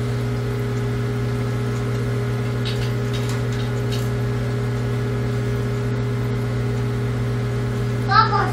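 A steady low mechanical hum with several steady higher tones above it, unchanging throughout, with a few faint light clicks about three to four seconds in.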